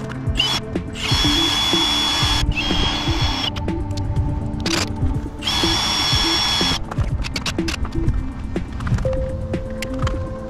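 Cordless drill running in three bursts, the first and longest about a second and a half, each with a steady high whine. Background music plays throughout.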